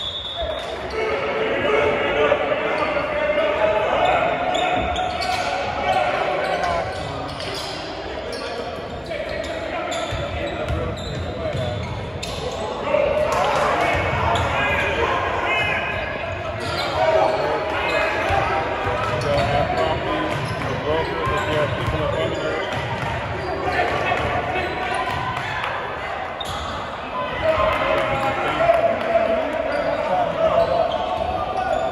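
A basketball being dribbled on a hardwood gym floor, the bounces echoing in the large hall, over a steady background of spectators' and players' voices.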